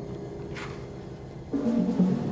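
Symphony orchestra playing held low chords that swell into a louder, fuller entry about one and a half seconds in.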